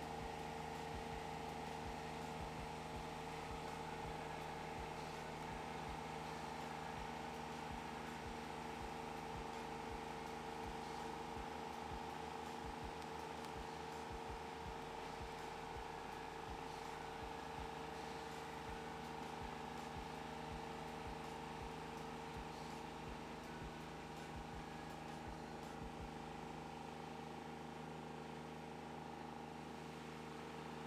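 Mini tracked skid steer's engine running at a steady throttle, a constant hum that holds the same pitch throughout and eases slightly near the end, as the machine pulls on a rope to drag a log.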